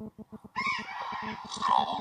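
An electronically disguised voice speaking, turned into a low, growling, rapidly pulsing buzz.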